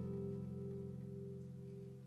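Acoustic guitar's closing chord ringing on and slowly fading at the end of a solo piece.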